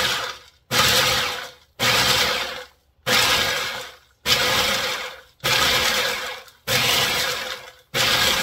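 Food processor pulsed about seven times, roughly once a second, its blade chopping and rattling dried hot peppers in the plastic bowl. Each pulse starts sharply and winds down within a second.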